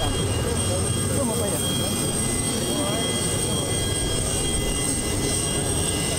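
Jet aircraft engines running, a steady rumble with a continuous high-pitched whine.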